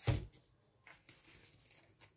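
Handling noise: a brief rustle or bump right at the start, then faint rustling.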